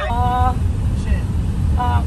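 Steady low rumble of a moving vehicle's engine and road noise heard inside the cabin, with a short held vocal call at the start and another near the end.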